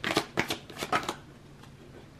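A deck of cards being shuffled overhand in the hands, with about five quick slapping strokes in the first second before the shuffling stops.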